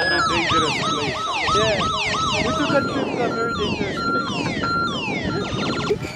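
Electronic siren warbling in rapid rising-and-falling sweeps, about three a second, with falling sweeps and short beeps in the second half.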